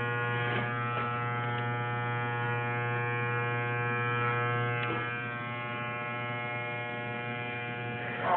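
Electric hair clippers running with a steady buzz, a little quieter from about five seconds in.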